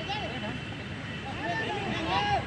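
Short shouted calls across a football pitch during play: one near the start and more from about one and a half seconds in, over a steady low rumble.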